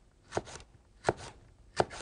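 Kitchen knife slicing a green chili pepper on a plastic cutting board: three sharp taps of the blade on the board, a little under a second apart.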